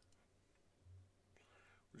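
Near silence: faint room tone, with a soft breath near the end just before speech starts again.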